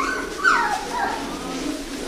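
Poodle puppy whimpering in thin, high whines, with one whine falling in pitch about half a second in.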